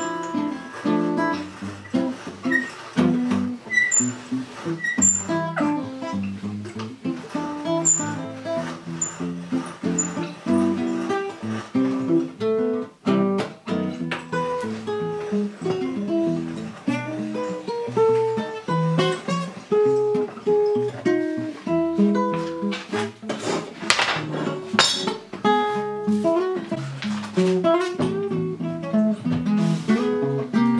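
Acoustic guitar played in a running, plucked melody with occasional strummed chords.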